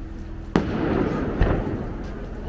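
Aerial fireworks shells bursting overhead: a sharp bang about half a second in, then a deeper, heavier boom about a second later, with rumbling echo between the two.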